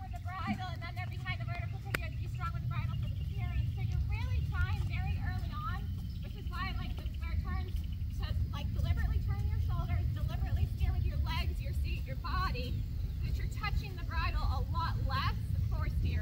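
Faint, indistinct voices talking over a steady low rumble.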